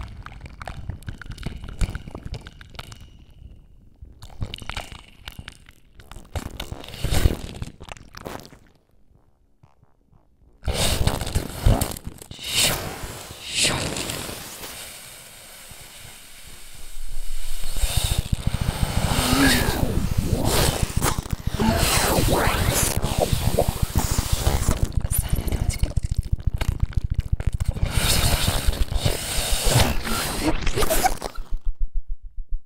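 Live experimental electronic music built from crunchy, scraping noise textures. It drops almost to silence about nine seconds in, returns dense a second or so later, and from about eighteen seconds carries a fast, crackling low pulse.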